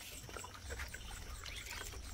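Hand scooping cow-dung slurry from a plastic bucket and smearing it over the floor: soft, wet rubbing strokes.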